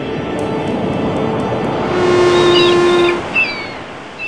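Logo intro sound effect: a swelling whoosh of noise that builds in level. About two seconds in, a strong steady tone is held for about a second, and short falling chirps sound over it toward the end.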